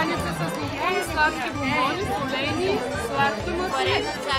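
Several voices chattering over background music with a steady beat.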